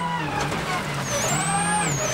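Ford Focus RS WRC rally car engine heard on board at speed. The revs dip just after the start, climb and fall through the middle, then hold steady again, with a thin high whine over the second half.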